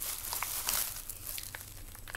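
A bag rustling and crinkling as it is handled, with a few light clicks.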